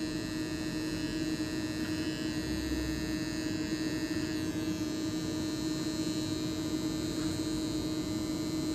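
Corded electric hair clippers running against the hairline during a haircut, a steady buzz.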